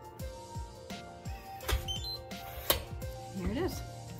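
SentriLock electronic real-estate lockbox unlocking from a phone app: a click, a short rising run of high electronic beeps, then a sharp click as the key compartment releases and drops open from the bottom. Background music with a steady beat plays under it.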